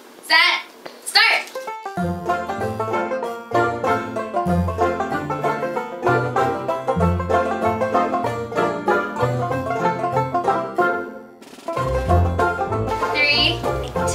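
Upbeat banjo music with a bass line starts about two seconds in, after a few voices and laughter. It breaks off briefly near the end, then comes back with a singing voice.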